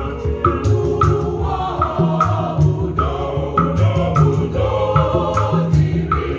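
Choir singing in parts to hand-drum accompaniment, with a steady percussion beat of short ringing strikes about two to three a second.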